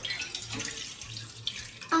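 Milk being poured from a ceramic mug into a stainless steel saucepan: a steady pouring, splashing stream.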